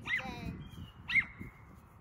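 A dog giving two excited, high-pitched barks, one at the start and a louder one about a second in, with a short whine trailing after each.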